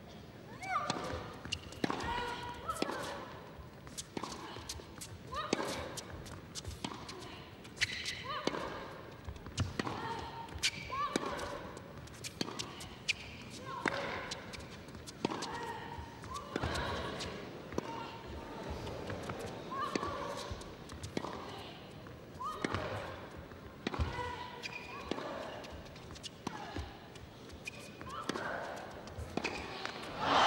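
Tennis rally: the ball struck back and forth by rackets about once a second, a crisp hit each time, going on for nearly the whole half-minute.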